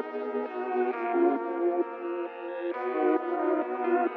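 Rap type-beat instrumental in a breakdown: the drums and bass are cut out, leaving only a thin synth melody playing a changing run of notes with no low end.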